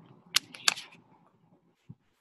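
Two sharp clicks about a third of a second apart, with a weaker one between them, over faint room noise.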